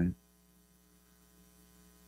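The tail of a spoken word, then a pause holding only a faint, steady electrical mains hum.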